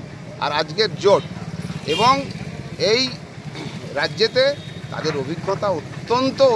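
A man speaking Bengali in short bursts, over a steady low hum.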